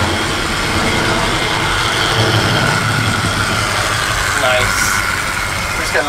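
An OO gauge model locomotive running around the track: a steady electric-motor whine over the rumble of its wheels on the rails, loud for its size.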